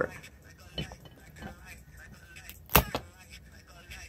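Cooked whole crab being pried apart by hand: a few faint crackles of shell, then one sharp crack about three-quarters of the way through as the shell gives.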